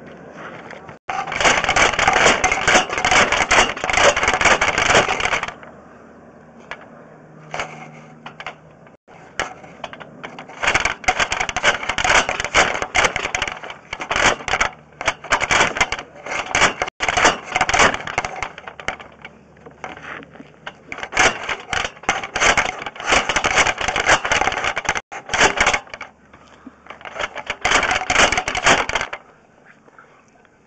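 Sewer inspection camera push cable rattling and scraping in about five bursts of a few seconds each, as it is shoved along the sewer pipe, with quieter pauses between the pushes.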